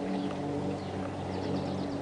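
A steady low machine hum holding several even pitches, with a few faint high chirps about halfway through.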